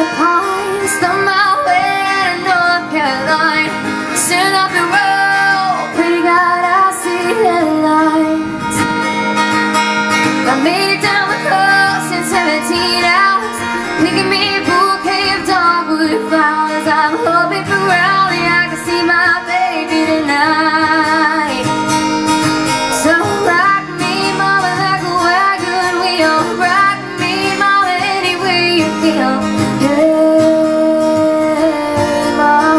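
A young woman singing a country-folk song, accompanied by her own strummed acoustic guitar.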